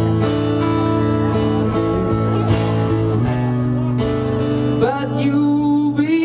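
Live rock band playing: electric guitar chords over bass and drums, with a voice coming in to sing near the end.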